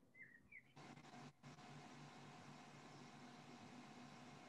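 Near silence: a few faint, short high chirps in the first half-second, then a faint steady background hiss with a low hum.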